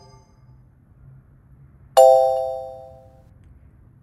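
A single bell-like chime sound effect about two seconds in, starting sharply and fading out over about a second and a half.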